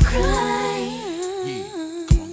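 Layered female R&B vocals singing a held, gliding melody; the bass and beat drop out about half a second in, leaving the voices alone, and the line falls in pitch near the end.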